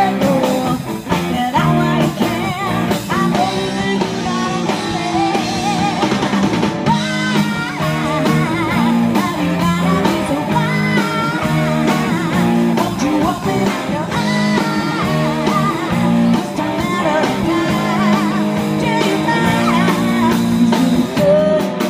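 A live band playing an amplified rock cover song: electric guitars and drums, with a woman singing lead.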